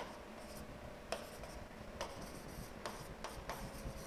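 Marker pen writing on a board: faint, irregular strokes and light taps as letters are formed, over a faint steady hum.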